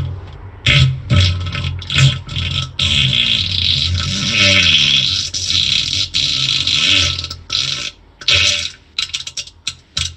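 A long string of farts recorded in a closed bathroom on a phone voice message: several short rough blasts, then a drawn-out one lasting several seconds, then more short blasts.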